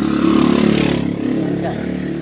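A motorcycle engine running close by, getting louder with a rush of noise in the first second, then steadier.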